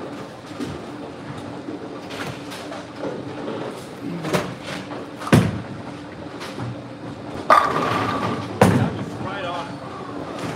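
Bowling alley: a bowling ball lands on the lane with a sharp thud about five seconds in, and about two seconds later the pins crash and clatter, followed by another hard knock. A steady low alley hum runs underneath.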